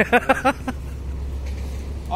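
A brief voice, then a steady low rumble with faint hiss, such as passing road traffic or wind on the microphone.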